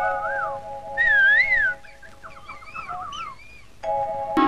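Film background music: a held chord, then whistle-like warbling calls over it. There is one loud wavering whistle about a second in, then a run of quick trills and softer wavering calls, and the held chord comes back near the end.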